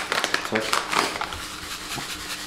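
Crinkling and rustling of a foil-lined paper pouch being worked open by hand, dense crackles through the first second that then ease off.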